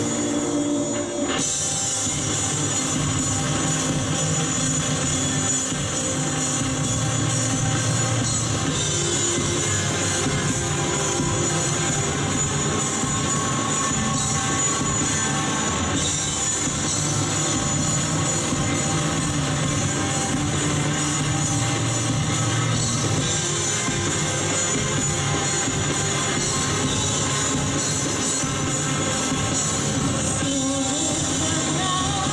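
Live rock band playing an instrumental passage without vocals: electric guitars, electric bass and a drum kit, at a steady, full level throughout.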